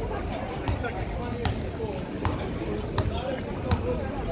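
Footsteps on stone paving at a steady walking pace, about one step every three-quarters of a second, under the chatter of passers-by in a busy pedestrian street.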